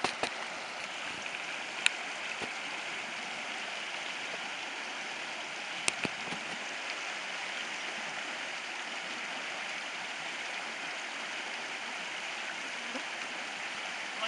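Shallow creek water running over stones, a steady rushing, with two brief sharp clicks about two and six seconds in.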